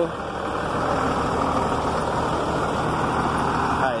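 Volvo B7R coach's rear-mounted diesel engine idling steadily, running on its replacement engine.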